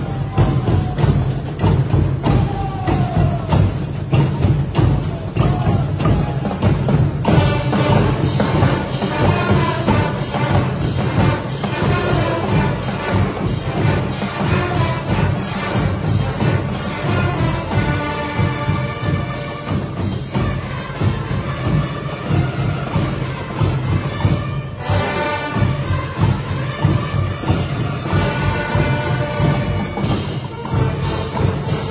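Marching band playing at full volume: bass and snare drums beat a steady cadence, and about seven seconds in brass instruments join with a melody over the drums.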